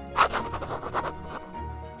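Scratchy scribbling sound effect, like a pencil drawing quickly on paper, in a run of short strokes for about a second after a brief pause, over soft background music.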